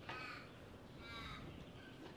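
Two faint crow caws, about a second apart.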